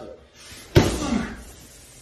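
A boxing glove landing a left hook on a padded body protector: one loud, sharp smack about three quarters of a second in.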